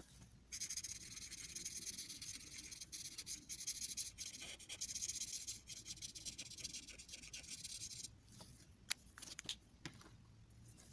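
Felt-tip marker rubbing quickly back and forth on paper, colouring in a patch with a steady scratchy hiss that starts about half a second in and stops about eight seconds in. A few light clicks follow near the end.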